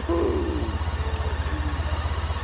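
A steady low engine rumble with an even pulse, about a dozen beats a second, as of a vehicle idling, with a faint voice briefly near the start.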